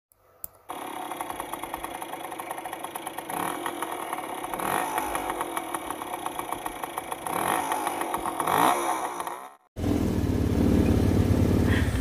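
Small 125cc scooter engine running with a rapid firing pulse, its pitch rising and falling several times as it is revved. After a brief gap near the end, a steadier, louder engine note follows.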